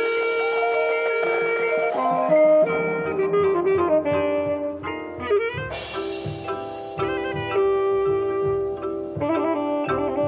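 Marching band playing: sustained wind chords, with a low part coming in about three seconds in, then a loud crash a little after the middle followed by repeated low drum strokes under the winds.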